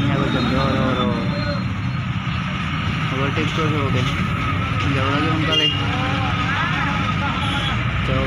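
Steady low rumble of a moving bus heard from inside the cabin, with people's voices talking over it at intervals.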